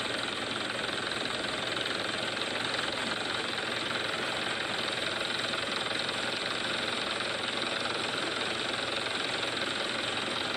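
Police helicopter, a Bell 412, hovering: a steady, even noise of rotor and turbine with no break, heard as playback through a phone's speaker.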